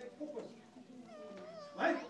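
A small child whining in drawn-out, wavering tones, with a short loud shout near the end.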